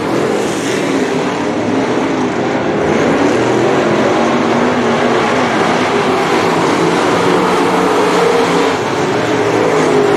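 Several dirt late model race cars' V8 engines running at racing speed around a dirt oval, a steady, unbroken engine sound.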